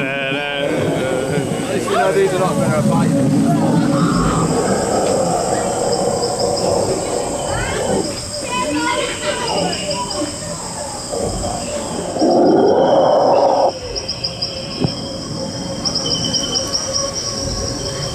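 Continuous high, rapidly pulsing insect-like chirping, as of crickets or cicadas, with a louder noisy burst lasting about a second and a half starting about twelve seconds in.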